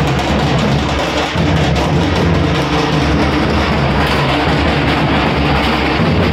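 Music driven by loud, steady drumming.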